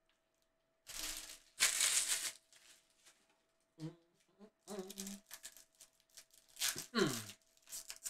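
A person coughing: a pair of coughs about a second in, then more coughs near the end.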